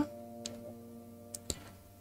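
Quiet pause with faint held tones fading out and three soft, short clicks: one about half a second in and two close together past the middle.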